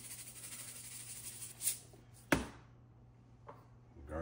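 Kosher salt shaken from a cardboard canister over raw baby back ribs: a fine, hissy patter of falling grains for the first couple of seconds, then one sharp knock a little past halfway, after which it goes quiet.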